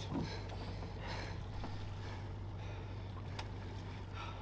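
A boat's outboard motor idling with a steady low hum, and a couple of faint knocks.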